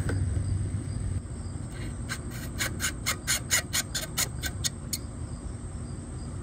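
Insect chirping outdoors in a regular run of short pulses, about four a second, for about three seconds mid-way, over a low steady rumble.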